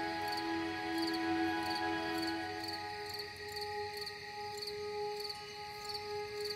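Crickets chirping about twice a second over slow ambient meditation music of long held tones; a low held note ends about three seconds in.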